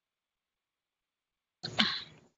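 Dead silence, then near the end a single short cough from a woman.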